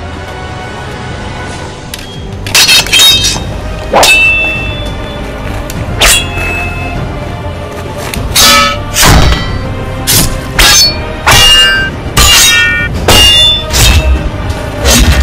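Background music with a series of about ten sharp, ringing metal clangs of steel sword blades striking. They start about two and a half seconds in and come more often over the last few seconds.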